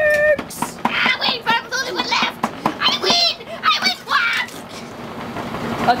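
Young voices shouting and exclaiming without clear words, dying down about four and a half seconds in.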